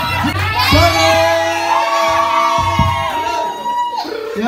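Male voices singing and shouting long, held notes through handheld microphones and a PA in a large room, with a crowd shouting and cheering.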